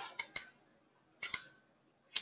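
Computer mouse clicking: three quick clicks, then a close pair about a second later.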